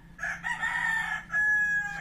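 A rooster crowing once: a single crow of about two seconds, ending in a long held note that falls slightly.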